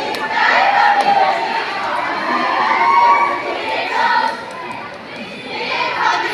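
A large group of young women's voices shouting a chanted cheer in unison, the lines rising and falling in pitch, with a short dip in loudness near the end.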